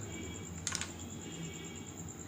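Knife cutting raw peeled potato on a wooden chopping board: a sharp knock of the blade meeting the board under a second in, with a few fainter taps, over a steady low hum.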